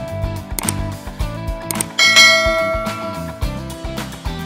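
Background music with a steady beat, and about two seconds in a bright bell-like ding sound effect that rings out for about a second: the notification-bell chime of an animated subscribe button.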